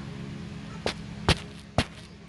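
Three short, sharp taps a little under half a second apart, the middle one loudest, over a steady low hum.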